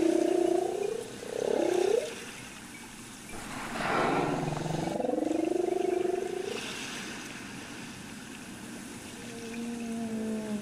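Humpback whale song: long moaning calls that glide up and down in pitch. One call runs through the first two seconds, a longer one follows from about three and a half to six and a half seconds in, and a fainter, higher call comes near the end.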